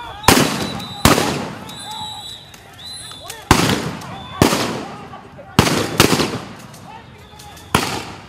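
Police weapons fire: seven sharp, loud bangs in uneven succession, each with a short echoing tail, two of them close together about six seconds in. Voices shout between the shots.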